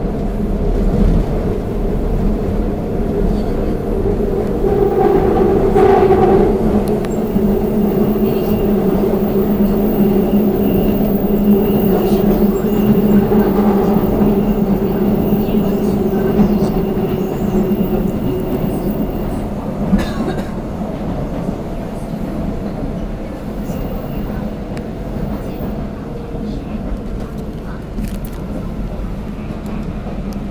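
Seoul Metro Line 2 subway train running, heard from inside the carriage: a steady rumble with a low hum that grows louder over the first few seconds and eases off after about twenty seconds.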